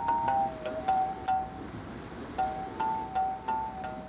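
Benta, an Antillean mouth bow, played by striking its string with a stick: a string of short struck notes stepping between a few high pitches, with a brief lull near the middle.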